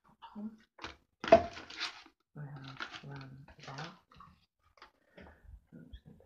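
Brown paper bag crinkling and rustling about a second in, the loudest moment, followed by a voice speaking indistinctly for over a second, then a few small handling clicks.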